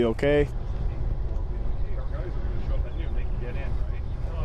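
Steady low engine rumble with faint voices in the background, after a man's voice finishes a word at the very start.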